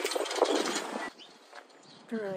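Leaves of a boronia shrub rustling as a sprig is handled, with a few small clicks, for about a second before it goes quiet.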